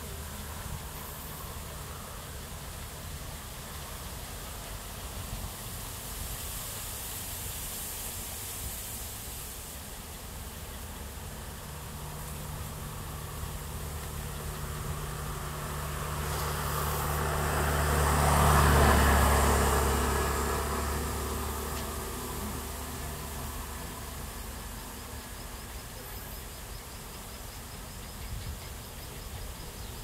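Steady outdoor hiss with the engine noise of a passing vehicle: a low hum that swells to a peak about two-thirds of the way through, then fades away.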